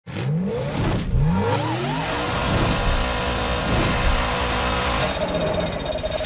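Race car engine revving up in two quick rising sweeps, like fast upshifts, then running steadily at high revs.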